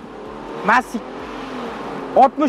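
Toyota Land Cruiser Prado 120's 4.0-litre V6 engine accelerating under hard throttle during a 0–100 km/h run, heard from inside the cabin and growing slowly louder. A brief shout comes about a third of the way in.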